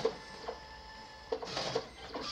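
ID photo printer mechanism running faintly: a click at the start, a small knock, then a short whirr about two-thirds of the way in, over a faint steady hum.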